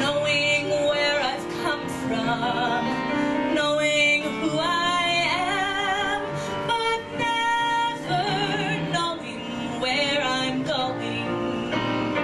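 A woman singing an improvised cabaret song into a microphone, with vibrato on her held notes, accompanied by a grand piano.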